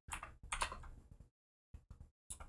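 Typing on a computer keyboard: several short, separate keystrokes, the later ones with silent gaps between them.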